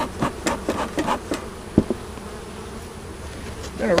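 Honeybees buzzing in a steady drone around an opened hive, with a run of light clicks and taps in the first second and a half and one sharp knock a little before two seconds in, as a wooden hive box is lifted.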